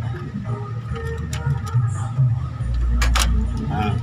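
A few sharp clicks and knocks of plastic parts being handled inside a photocopier's paper-feed area, over a steady low rumble that swells near the end.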